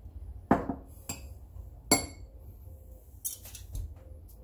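A spoon clinking against a cup while raisins are spooned onto rice pudding. There are a few separate clinks, the sharpest and most ringing about two seconds in, then a quick run of taps near the end.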